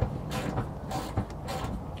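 Scattered metallic clicks and knocks of a wrench being worked on a rusted seat-mounting bolt under a pickup's bench seat, over a low steady rumble.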